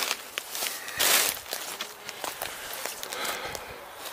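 Footsteps pushing through thorny brush, with the bushes scraping and rustling against clothing and scattered sharp twig snaps; the loudest rustle comes about a second in.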